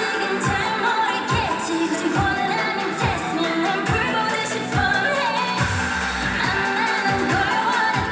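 K-pop song with female singing over a heavy electronic beat and a bass drum hitting steadily, played back loud through stage PA speakers.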